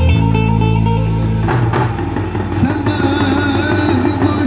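Live folk dance music: an amplified melody with a steady low bass, and davul bass drums struck with sticks, a few sharp drum strikes standing out around the middle.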